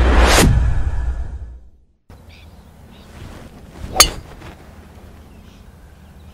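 A whoosh and music from a logo sting fade out over the first two seconds. After a short gap of quiet outdoor background, a golf club strikes a teed ball with one sharp crack about four seconds in.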